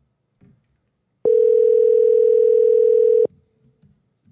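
Telephone ringback tone on an outgoing call that has not yet been answered: one steady ring lasting about two seconds, starting a little over a second in.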